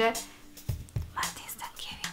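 A woman whispering a few short words, without voice.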